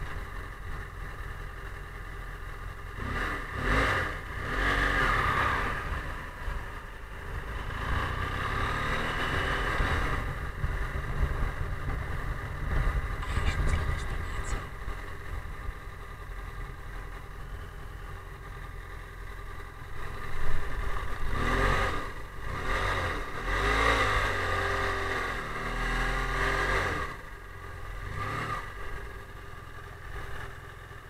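BMW F800GS parallel-twin engine running at low speed with wind and road noise, easing down toward a stop. Voices talk over it twice, muffled.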